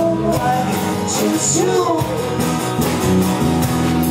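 Live rock band playing: acoustic guitar strummed under a singing voice, with drums.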